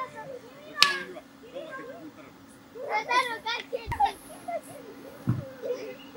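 Children's voices calling and shouting at play, high-pitched and in short bursts, with a sharp click about a second in and two dull thumps later on.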